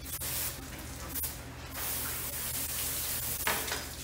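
Water spraying from a hose nozzle onto a red drum fillet to rinse it, hissing in uneven bursts with the longest spray through the middle.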